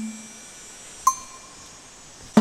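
Chime tones ringing and fading: a low tone dies away at the start, then a single higher chime is struck about a second in and rings on quietly.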